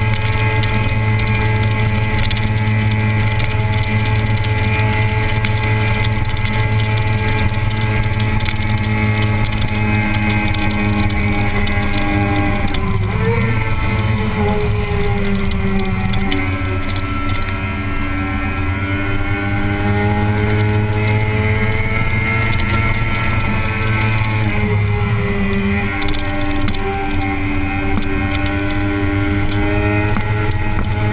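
Kawasaki ZX-6R's inline-four engine running at highway cruising speed, heard from on board with wind rush. Its note drops about 13 seconds in, then climbs slowly back over the next dozen seconds and steadies again.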